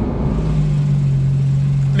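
Porsche 911 GT3's naturally aspirated flat-six heard from inside the cabin, running at low, steady revs with a constant drone while the car rolls slowly to cool down after a hot lap. The note settles to an even pitch shortly after the start.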